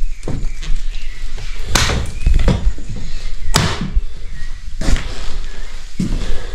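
Footsteps and knocks on a wooden floor strewn with debris, with three sharper thumps about two, three and a half and five seconds in.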